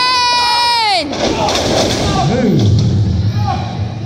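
A person's long, loud, high-pitched yell, held on one note, that drops off in pitch and ends about a second in. Lower shouting voices follow.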